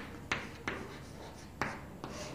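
Chalk writing on a chalkboard: faint scratching strokes with three short sharp ticks as the chalk strikes the board.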